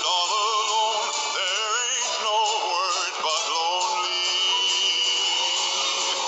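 A man singing with wide vibrato over instrumental accompaniment, holding one long note in the second half.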